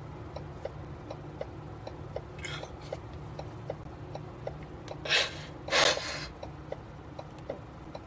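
A man crying, with a couple of faint sniffs and then two loud sharp sniffs or breaths a little past halfway. Under them a vehicle's flasher relay clicks steadily, about three ticks a second, over the low hum of the idling delivery truck.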